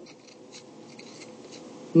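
Pen scratching faintly in a few short strokes, writing a minus sign and a 1.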